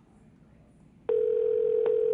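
Amazon Echo smart speaker playing the steady ringing tone of an outgoing phone call to the front desk. The tone starts about a second in, after a short near silence.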